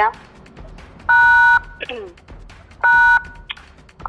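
Two loud dual-tone telephone beeps, each about half a second long and about a second and a half apart, on a phone line during a call.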